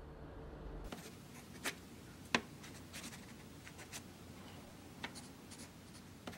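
Faint scratching of a pen writing on paper, with a few sharp ticks of the nib, starting about a second in after a brief low hum.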